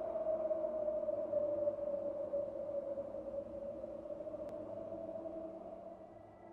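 A low ambient sound-design drone that holds steady and then fades slowly toward the end.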